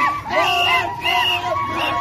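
Crowd of street protesters shouting and chanting together, many loud voices overlapping.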